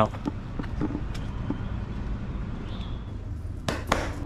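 Steady rumble of road traffic, with a few faint clicks and knocks.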